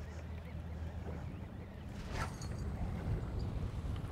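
Tiller outboard motor running low and steady under wind and lapping waves, with one brief sharp sound about two seconds in.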